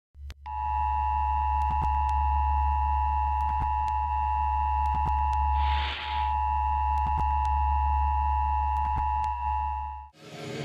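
Electronic intro sound: a steady low drone under held high tones, with faint clicks every so often and a short hiss about halfway through. It cuts off suddenly at the end.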